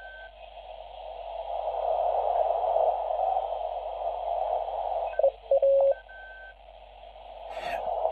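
Chinese uSDX/uSDR QRP SDR transceiver's small speaker playing its receive audio: a narrow band of hiss that grows louder over the first two seconds as the volume is turned up, with a few brief steady tones about five seconds in. The owner calls this radio's audio horrible.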